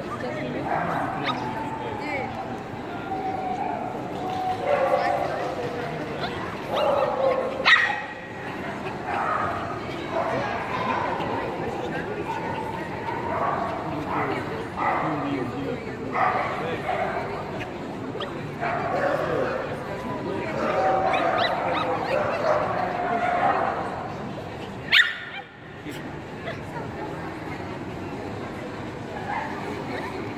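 Dogs barking and yipping over the chatter of a crowd, with two sharp louder sounds about 8 and 25 seconds in.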